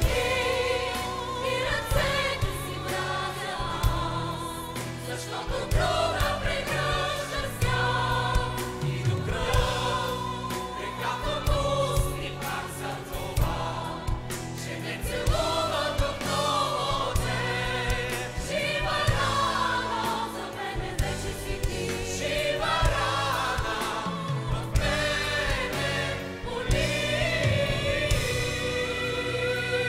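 Mixed choir and vocal soloists singing a ballad over live band accompaniment with bass and drums.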